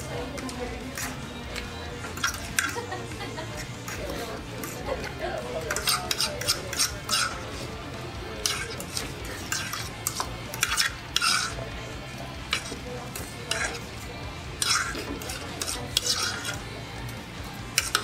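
Metal forks scraping and clinking on ceramic dinner plates in quick, irregular strokes as the last food is cleaned off. The scrapes grow busier after the first few seconds.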